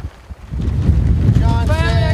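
Wind buffeting the microphone, a low rumble that drops briefly at the start and then comes back strongly. Voices join in about one and a half seconds in.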